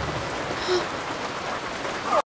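Steady rain falling, an even hiss, with one brief sound about two-thirds of a second in.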